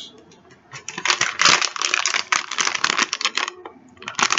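A foil Domez blind-bag packet crinkling and crackling as it is picked up and handled. It makes a dense run of crackles lasting about three seconds, starting about a second in.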